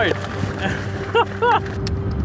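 Excited laughter from men aboard a small fishing boat, with two short laughs about a second and a half in, over the steady hum of the boat's outboard motor.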